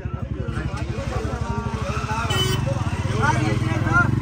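A vehicle's engine running with an even low pulse, growing louder and steadier about two seconds in, with people's voices over it.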